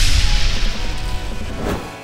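Editing transition sound effect: a sudden hard hit followed by a rushing noise and low rumble that fade away over about two seconds, marking the start of the next numbered list entry.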